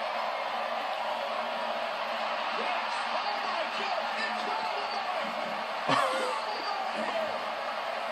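Wrestling broadcast audio playing in the room: steady arena crowd noise with commentators' voices underneath, and one sudden loud burst about six seconds in.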